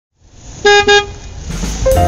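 Two short vehicle-horn toots, a quick beep-beep, over a rising hiss of noise. Music starts near the end.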